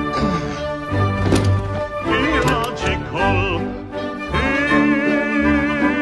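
Operatic singing with orchestral accompaniment; about four and a half seconds in, the voice settles into a long held note with vibrato.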